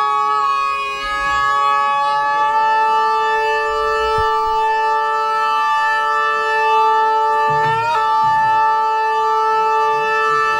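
A steady drone of several held notes from the band, with no beat or rhythm. Near the end a brief upward slide in pitch breaks in, and the drone carries on.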